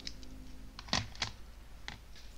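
A few light clicks and taps of small makeup items being handled close to the microphone, four in two seconds, the loudest about a second in.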